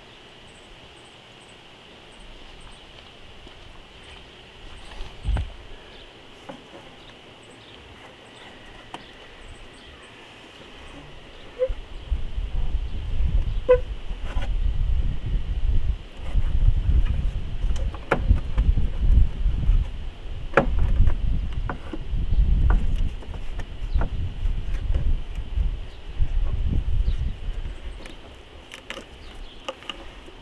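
Scattered light plastic clicks and knocks as an engine cover is worked down into a car's engine bay, over a steady high insect drone. From about twelve seconds in, loud uneven gusts of wind buffet the microphone and become the loudest sound.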